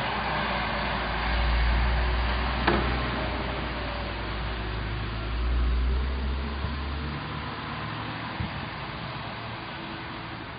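City street traffic from the road below, with a low rumble that swells about a second in and again around five seconds before fading near seven seconds. One short tick about two and a half seconds in.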